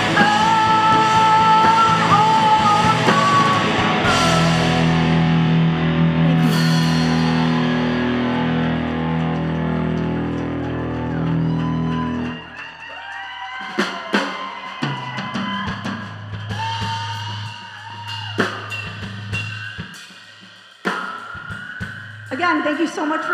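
Live rock band playing, with electric guitar, bass guitar and drum kit. A little over halfway through, the full band drops out, leaving scattered drum and cymbal hits over a few held notes.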